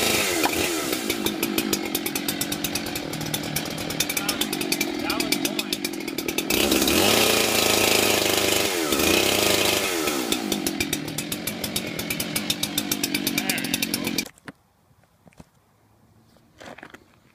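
Husqvarna two-stroke chainsaw revving up to full throttle twice and dropping back to a fast, pulsing idle in between, its chain used to open beer bottles. The engine sound cuts off suddenly near the end.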